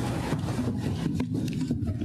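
Shuffling, footsteps and rustling of people moving about among wooden pews, with scattered small knocks, over a steady low electrical hum.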